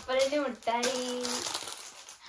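Plastic food packets crinkling as they are handled, alongside a person's voice that holds one long drawn-out note about a second in.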